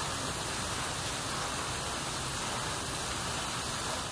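Steady, even rushing noise of outdoor background ambience, with no distinct events.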